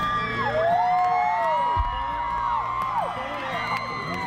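Concert crowd cheering, with many high whoops and screams rising and falling over one another, and music low underneath.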